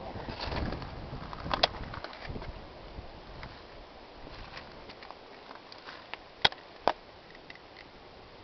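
Footsteps and camera handling over the rocks and gravel of a creek bed, ending in two sharp clicks about half a second apart.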